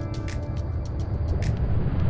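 Boiling water poured in a thin stream onto raw sea bass fillets in a metal pan, a continuous splashing pour, over background music.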